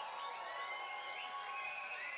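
Faint audience applause and whistling in a concert hall just after a song ends, with thin wavering whistle tones over a soft haze.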